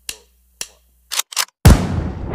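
Electronic music track in a break: a few sharp, gunshot-like clicks on near silence, then the full beat drops back in with a heavy bass hit near the end.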